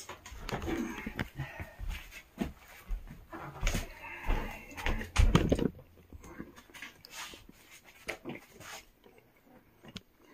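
Irregular clicks, knocks and rustling as an air conditioner's plug and yellow extension cord are handled and pushed into a power bar, with heavier thumps about four to five seconds in.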